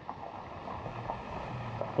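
Light wind on the microphone outdoors: a steady, even hiss with no distinct events.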